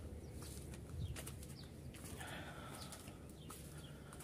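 Quiet farmyard background with faint bird chirps and poultry calls, the fullest call coming in the second half.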